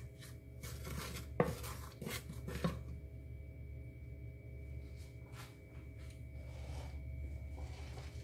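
Wooden spoon stirring in an aluminium pot, scraping and knocking against the metal sides for the first three seconds, with one sharper knock about a second and a half in. Then a few faint clicks over a steady low hum.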